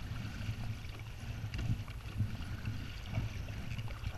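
Choppy sea water splashing and lapping against a sit-on-top kayak as it is paddled along, with the paddle blades dipping into the water, over a steady low rumble of wind on the microphone.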